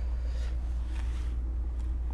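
A steady low hum, with faint soft rubbing as hands press a small plastic night light onto a wall.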